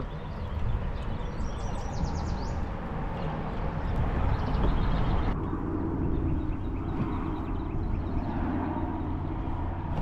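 Pedal-drive kayak under way on a shallow river: water running along the hull over a low rumble, with a bird chirping briefly in the first few seconds. A little past halfway the sound changes abruptly and a faint steady drone sits under the water noise.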